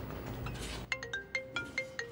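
Mobile phone ringtone: a quick melody of bright, marimba-like notes starting about a second in.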